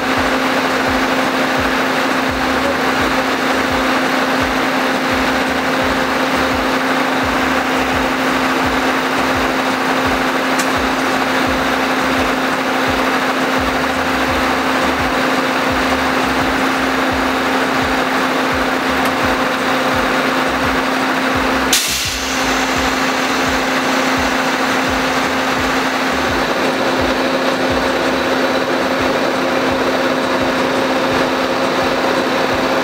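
Truck-mounted concrete pump and concrete mixer truck running steadily during a pour: a continuous diesel engine drone with a steady hum over a low, uneven rumble. A single brief click comes about two-thirds of the way through.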